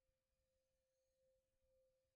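Near silence but for a faint, steady single ringing tone: the lingering tail of a singing bowl.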